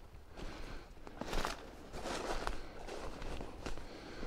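Footsteps rustling and snapping through dry leaf litter and twigs, an irregular series of steps.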